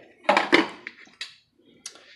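Glass pot lid being set back down on a metal cooking pot: a clatter about half a second in, followed by fainter clinks and one sharp tap near the end.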